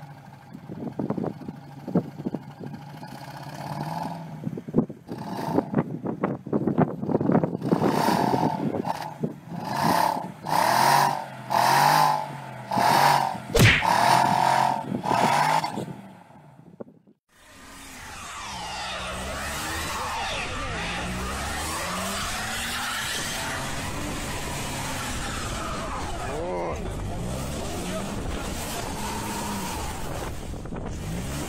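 BMW X5 xDrive SUVs stuck in snow, engines revving as their wheels spin without getting out. First come short rev bursts about a second apart; then, after a sudden break, a continuous run of engine and tyre noise wavering up and down in pitch.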